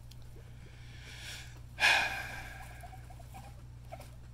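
A single breathy sigh about two seconds in, sudden and fading out over about a second; the rest is a low steady background hum.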